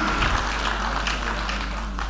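Steady background noise of a crowded hall during a pause in a speech over a PA system: an even murmur with no distinct event.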